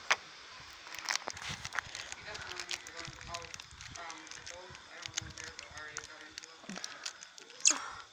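Crinkly plastic blind-bag wrapper being pulled and torn open by hand, a scatter of small crackles, with soft voices in the background. A brief, louder squeak near the end.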